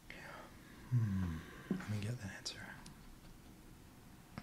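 A man's quiet voice murmuring a few indistinct sounds, from about a second in until past the middle, with faint small clicks.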